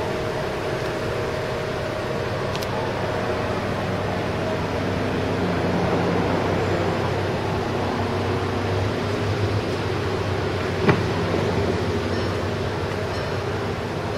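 Steady mechanical hum with a few held tones throughout. About eleven seconds in there is a single sharp click as the car's front door is unlatched and opened.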